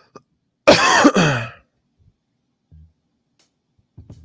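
A man clearing his throat once, a loud burst of about a second.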